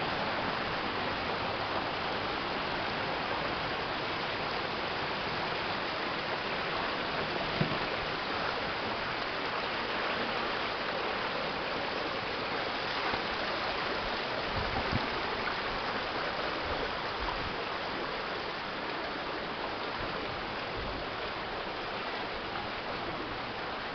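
Stream rushing over rocks in a narrow gorge: a steady, even rush of water close to the microphone. A brief thump comes about a third of the way in, and a few low knocks come around the middle.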